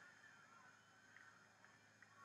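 Near silence: faint background hiss with a faint steady low hum.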